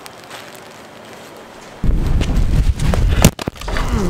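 Low hiss for about two seconds, then loud, low handling noise on the camera's microphone as the camera is picked up and moved, with a sharp knock and a brief dropout a little past three seconds in.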